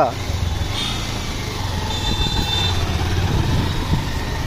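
Honda Hornet motorcycle engine running with a steady low drone as the rider moves off, amid street noise. A brief faint high tone sounds about two seconds in.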